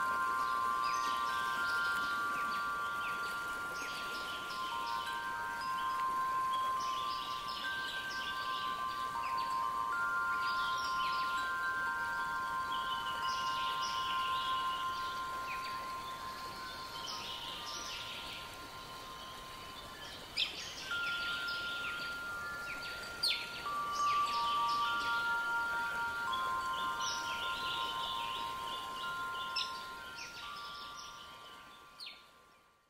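Calm ambient soundscape of long, overlapping chime-like tones held for several seconds each, with bird-like chirping above them.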